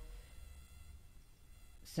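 Faint background: a low steady hum and light hiss of a voice recording between spoken sentences, with a short hiss near the end as the man's voice comes back in.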